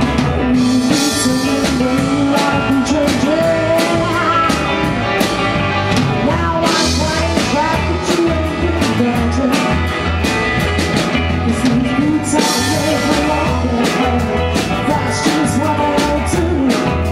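Live rock band playing: a woman's lead vocal over electric guitars, bass guitar and a drum kit keeping a steady beat.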